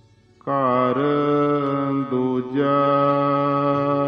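A man's voice chanting Gurbani, the Hukamnama reading from Sri Harmandir Sahib, in long held melodic notes. The voice comes in about half a second in after a brief pause, bending into the note, and breaks off briefly just after the middle before holding the next note.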